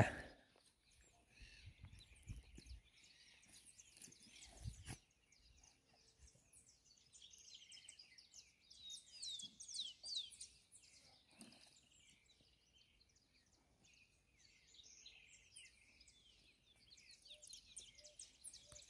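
Faint birdsong: scattered high chirps, busiest around nine to ten seconds in with a few quick falling whistles. A couple of soft low bumps come about two and five seconds in.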